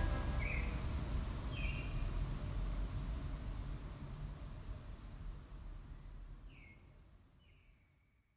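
Outdoor ambience: low steady noise with scattered short bird chirps, fading out to silence just before the end.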